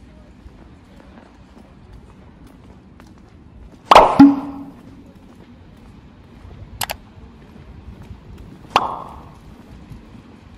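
Three sharp knocks or clangs over a low steady city background: a loud double bang about four seconds in with a short low ring after it, a brief sharp click near seven seconds, and another ringing knock near nine seconds.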